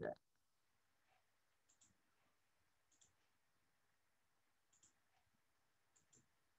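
Near silence with a few faint, sharp clicks spaced a second or more apart.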